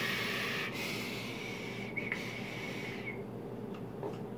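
Long draw on a rebuildable squonk atomizer fired from a mechanical box mod: a steady airy hiss of air pulled through the atomizer's airflow, with a faint thin whistle under it. It stops about three seconds in.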